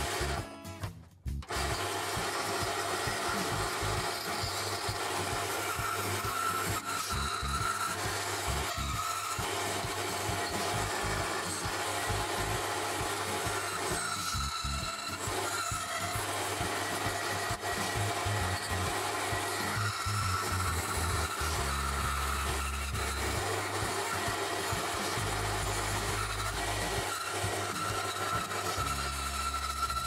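Bandsaw running and cutting through a small pine block, the blade rasping steadily through the wood, with background music playing. The sound drops away briefly about a second in.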